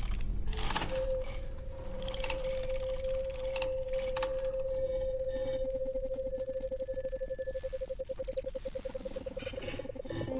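A sustained, steady tone from the film's soundtrack sets in about a second in and holds, turning into a fast pulsing warble near the end, with a lower pulsing tone joining about halfway. Scattered clicks and knocks sound underneath.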